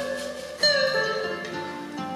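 Live acoustic music: acoustic guitars picking with sustained notes ringing on, a new note coming in about half a second in.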